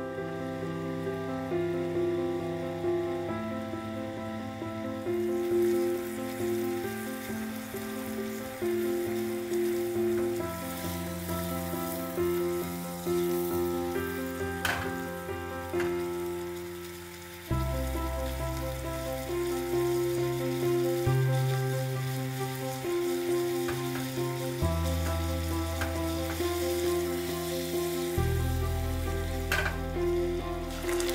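Sugar and water syrup boiling in a small saucepan as it cooks toward caramel: a fizzing, bubbling hiss that builds after about five seconds. Background music with sustained notes and a slow-changing bass line plays throughout.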